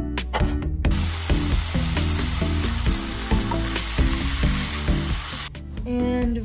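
Food sizzling in a frying pan, a dense steady hiss that starts about a second in and cuts off sharply near the end, over background music with a steady beat.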